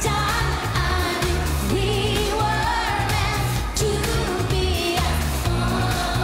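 Live dance-pop band with a woman singing the lead vocal over a steadily pulsing bass line.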